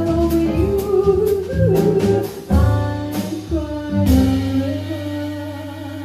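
Female jazz vocalist singing with a piano trio: grand piano, upright double bass and drum kit, a cymbal ticking about twice a second. About four seconds in the beat drops out and a struck chord and held sung note ring and fade.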